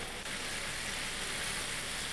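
A pan of onions and mushrooms in a white-wine reduction, sizzling and bubbling with a steady hiss as cream is poured in.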